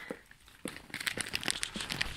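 A large dog licking and mouthing a whole frozen raw chicken carcass: irregular crackling and clicking that starts about half a second in.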